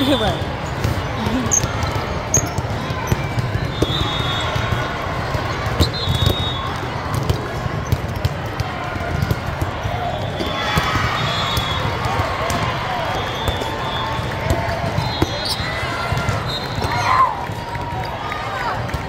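Volleyballs being hit and bouncing on a hard sport court, a scatter of sharp knocks over the steady chatter of a crowd in a large hall.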